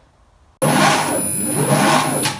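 Colchester Master lathe running under its three-phase motor, fed by a digital phase converter, with a steady high-pitched whine over the drive noise. It comes in suddenly about half a second in. This is the fault where the motor keeps stopping and starting, a common problem that was traced to the lathe's brake.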